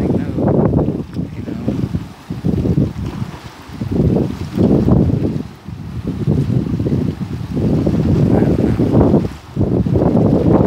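Wind buffeting the microphone in strong gusts: a low rumble that swells and drops, with short lulls a couple of seconds in and again just before the end.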